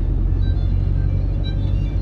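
Steady low rumble of the engine and tyres heard inside a moving vehicle's cab, with faint music underneath.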